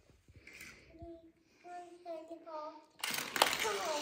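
A child speaking softly. About three seconds in, a loud, sudden rustling noise starts and runs on under the voice.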